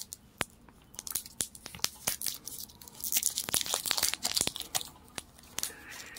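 Clear plastic wrap being pulled and peeled off a smartwatch by hand: a run of crackles and sharp clicks, thickest a little past halfway.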